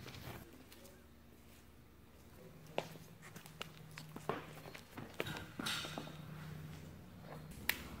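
Scattered footsteps and small clicks and taps on a concrete floor, starting a couple of seconds in, over a faint steady hum.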